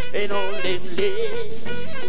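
Live rocksteady band playing while a male singer sings over it, his voice sliding up and down in pitch above guitar, keyboard and drums.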